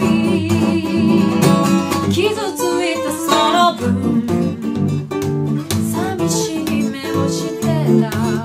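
A woman singing a ballad to acoustic guitar accompaniment, her held notes wavering with vibrato.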